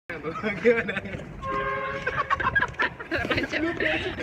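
Voices of a man and a woman laughing and chattering close to the microphone, with a short, steady two-note tone about a second and a half in.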